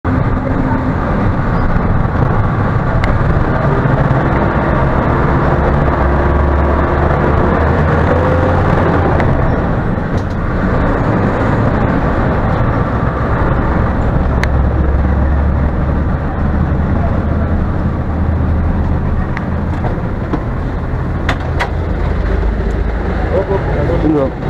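Engine and road noise of a city BRT bus under way, heard from inside the cabin as a steady low rumble. A few sharp clicks come near the end.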